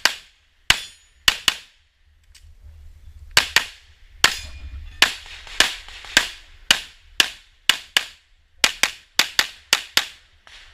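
Handgun shots fired rapidly, about twenty in all, mostly in quick pairs, with one short pause about a second and a half in and a fast string of shots near the end.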